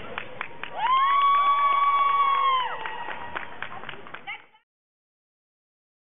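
Crowd clapping and cheering, with a loud, high held whoop from about one second in that lasts around two seconds; the sound cuts off suddenly at about four and a half seconds.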